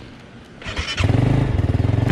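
Motorcycle engine being started: a short burst of cranking a little over half a second in, then the engine catches at about one second and runs on at a steady idle.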